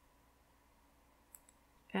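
A couple of faint clicks of metal knitting needles and a crochet hook touching as stitches are worked, over quiet room tone.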